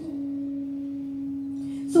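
A single low drone note held perfectly steady, with a faint overtone above it, sustained as an accompanying drone.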